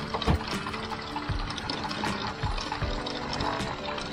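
Background music with held tones, over water from a deck wash hose pouring and splashing onto a sailboat's anchor chain at the bow.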